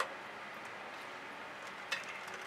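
Low steady background noise with a light tap at the start and another just before the end, as a spatula and hand handle a paint-covered pan.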